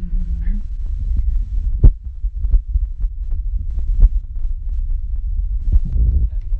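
Band gear idling in a small room before playing: a steady low hum with scattered, irregular low thumps, and a held low note that stops about half a second in.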